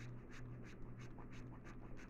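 A bar of soap being grated on a metal hand grater: faint, quick rasping strokes, about five a second.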